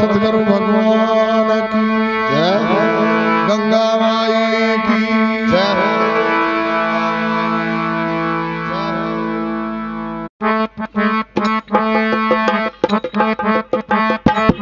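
Harmonium playing sustained notes over a steady drone, with sliding ornamental notes rising several times. About ten seconds in it stops abruptly and a fast percussion rhythm takes over.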